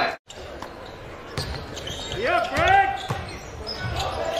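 Basketball bouncing on a hardwood court in a large arena hall, a few scattered bounces, with a short voice calling out about two seconds in.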